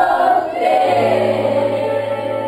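Children's choir singing together in unison, holding long notes with a slight waver, moving to a new note about half a second in. A steady low note joins underneath about halfway through.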